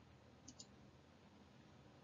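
Near silence: room tone with two faint short clicks about half a second in, a split second apart.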